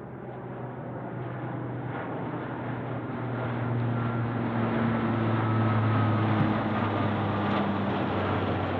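C-130 Hercules four-engine turboprop flying overhead: a steady propeller drone that grows louder as the plane approaches, peaking about six seconds in, with the higher tone dipping slightly in pitch as it passes.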